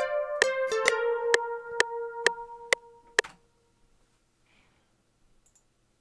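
Sustained piano-bell notes from FL Studio's Sytrus synth, played live on a MIDI keyboard, over the metronome ticking at 130 BPM (about two clicks a second) while MIDI recording runs. The notes and clicks stop a little after three seconds in, leaving near silence.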